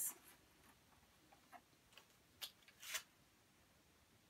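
Near silence, broken by a few faint, brief rustles of a large printed cardboard punch-out sheet being lifted and handled, the clearest about two and a half and three seconds in.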